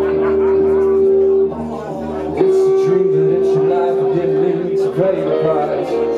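Live rock band playing an instrumental passage: guitars holding long sustained chords over bass and drums, with cymbal strokes. The band dips briefly about one and a half seconds in, and a new held chord comes in about a second later.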